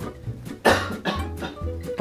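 A man coughing, the loudest cough just over half a second in, over background guitar music.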